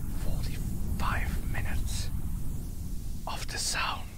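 A person whispering in two short breathy phrases, a second or so in and again near the end, over a steady low rumble.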